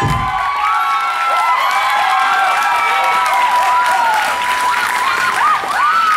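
Audience applauding and cheering, with long drawn-out shouts, as the dance music cuts off at the very start.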